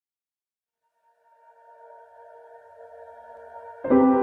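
Background music fading in: after about a second of silence, soft sustained tones swell slowly, and a much louder chord comes in just before the end.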